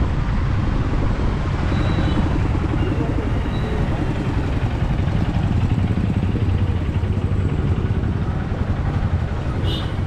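Street traffic noise: the small engines of auto-rickshaws and motorbikes running, with a steady low rumble and faint voices of passers-by. There is a brief sharp click just before the end.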